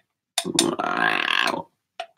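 Wordless vocal improvisation by a man at a microphone: a single mouth click, then one held, throaty vocal sound lasting about a second.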